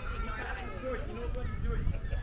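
Distant shouts and calls of young soccer players across the field, over a steady low rumble.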